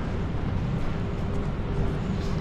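Steady low rumble of city street traffic, with a faint steady engine hum running through it.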